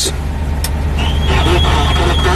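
Old pickup engine idling, heard from inside the cab. About half a second in there is a click as the dash AM radio is switched on, and about a second in the radio gives a steady high whistle with faint garbled sound: weak reception, which the owner thinks is down to a missing antenna.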